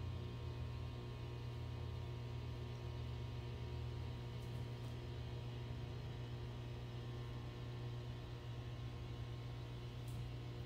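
Steady low hum with a faint even hiss: room tone, with no distinct sound event.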